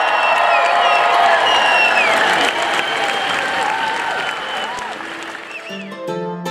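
A large audience applauding, with whoops and whistles that slide in pitch. The applause eases off near the end as music comes in.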